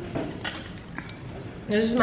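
Cutlery and crockery clinking lightly on a laid breakfast table: two short clinks about half a second apart.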